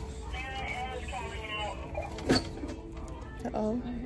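Another person's voice calling out in the store, with a steady low hum underneath and one sharp click a little over two seconds in.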